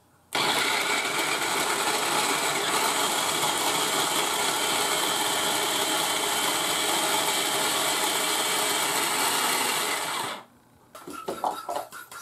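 Small electric food processor running steadily for about ten seconds, its blade grinding pepperoni and garlic cloves finely; the motor starts abruptly and cuts off suddenly near the end.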